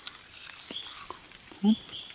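Someone chewing a raw Pipturus leaf, with a couple of faint crunches, then an approving 'mm' about three-quarters of the way in. A short, high chirp repeats every second or so behind it.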